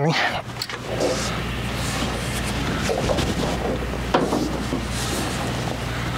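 Compressed air hissing steadily from an air hose, starting about a second in, over a steady low mechanical hum.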